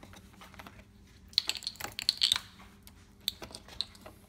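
Light clicks and clatter of small objects handled on a kitchen countertop: a quick burst about a second and a half in, then a few single clicks near the end.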